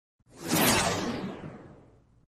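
Whoosh sound effect for a logo intro: a single swish that swells in quickly, then fades away over about a second and a half, its hiss sinking in pitch as it dies.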